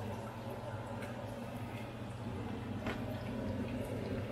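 Chicken wings frying in hot oil, a steady sizzle, over a steady low hum.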